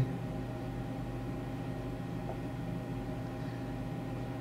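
Steady low background hum with several faint held tones and a light hiss.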